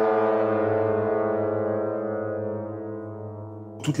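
A single low sustained drone note from the soundtrack music, rich in overtones and held at one steady pitch, slowly fading until it stops near the end, when a man's voice begins.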